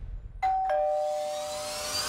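A two-note ding-dong chime: a higher note about half a second in, then a lower note a moment later, both ringing on and slowly fading.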